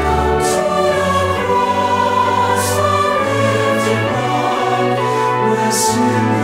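Mixed SATB choir singing a sacred anthem in held chords over instrumental accompaniment, with soft hissing consonants now and then.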